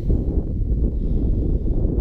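Wind buffeting the microphone: a steady low rumble with no other clear sound over it.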